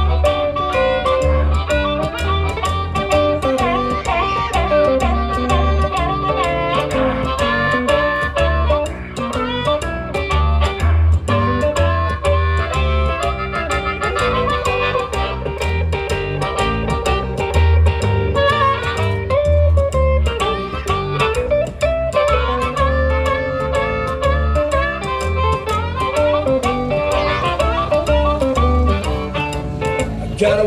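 Live blues instrumental break: a harmonica played into a microphone and an electric guitar over a steady upright double bass line, with bending, wavering notes.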